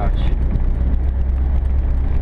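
Small car's engine and road noise heard from inside the cabin while cruising, a steady low drone.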